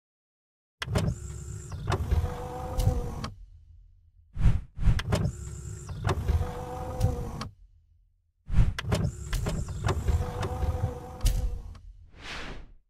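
Editing sound effect for an animated outro: a mechanical whirring slide that opens with a sharp click, played three times in a row, each about three seconds long.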